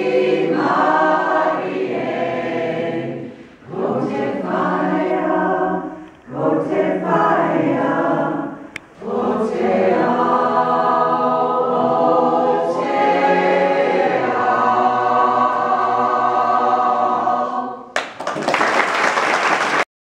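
Small choir singing a Māori hymn (waiata) unaccompanied, in phrases with short breaks for breath, then a long held final passage. As the singing stops near the end, the audience breaks into applause.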